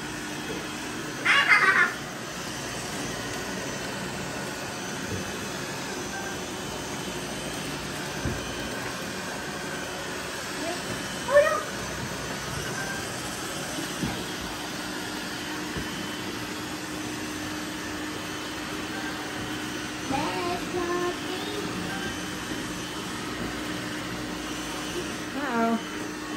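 Several robot vacuums (iRobot Roombas, a eufy and others) running together on a mattress, a steady whir, with a low steady hum joining about halfway through. A few brief high-pitched sounds cut in over it, the loudest about a second and a half in.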